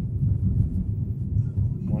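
Steady low rumble of a car's engine and tyres on a wet, slushy road, heard from inside the moving car's cabin.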